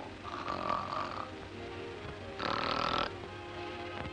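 A sleeping boy snoring twice, the second snore louder, over soft background music.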